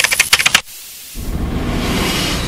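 A quick run of sharp clicks lasting about half a second, then a steady rushing noise that swells in about a second in and holds.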